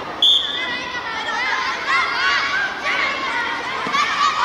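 Many children's voices chattering and calling out at once. About a quarter second in there is a sudden short, high, steady tone.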